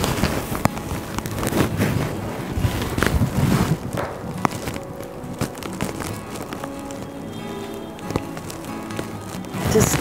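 Soft background music with held, steady notes, most plainly in the second half. In the first few seconds it is joined by the rustle and crackle of a tussar silk saree being handled and draped.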